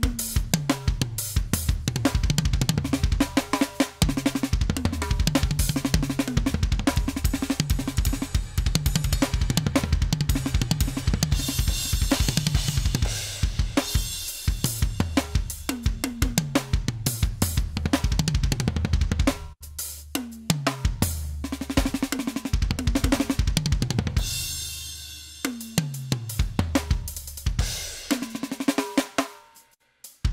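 Alesis Strata Prime electronic drum kit played in fast grooves and fills: rapid kick, snare, tom and cymbal hits with a deep, pitched low end. The playing breaks off briefly twice in the second half and stops just before the end.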